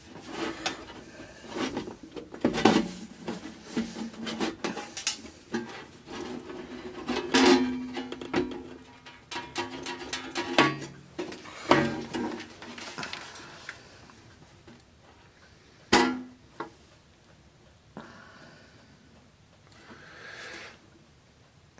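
Irregular knocks, clicks and scrapes from a Technics RS-TR210 dual cassette deck's metal cover and case being worked at and the unit being shifted about. Some knocks leave a brief ringing hum. The handling is quieter over the last few seconds.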